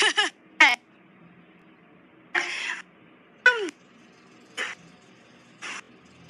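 A few short wordless vocal sounds, two of them brief calls falling in pitch and one a breathy burst, separated by quiet gaps.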